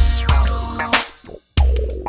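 Instrumental G-funk hip-hop beat: deep drum-machine kicks and bass under held pitched notes. The music drops out for a moment about one and a half seconds in, then comes back with another kick.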